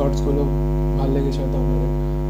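Steady electrical mains hum picked up by the microphone: a low buzz with a stack of higher steady tones above it, as loud as the speech around it. It is noise in the recording, not a sound in the room.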